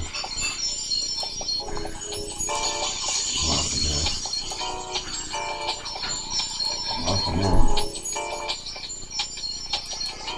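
Background music with bell-like, jingling notes over steady high tones. Two louder low sounds break in, about three and a half and seven and a half seconds in.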